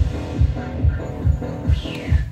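Music played from a Denon DCD-720AE CD player over loudspeakers: a deep, steady bass beat a little over two per second, with a falling high tone near the end.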